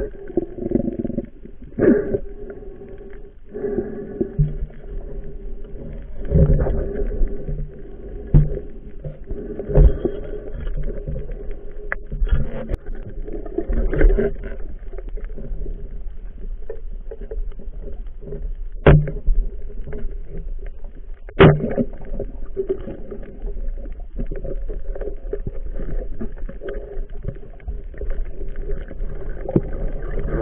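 Muffled underwater sound picked up through a diving camera's housing: a continuous low rumble of water movement under a steady hum, broken by scattered knocks and two sharp clicks about 19 and 21 seconds in.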